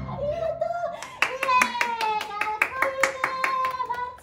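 Hand clapping in quick, even claps, about six a second, starting a little over a second in, with a voice holding one long note that slowly falls in pitch.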